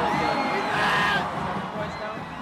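Arena crowd cheering and whooping, loud for about the first second and then dying down.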